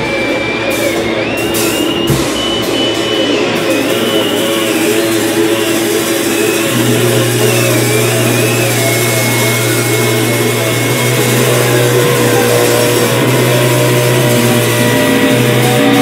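Loud live noise music from amplified electric guitar and electronics: a dense distorted wash with a high whine that wavers and jumps in pitch during the first half. A steady low hum comes in about seven seconds in and holds to the end.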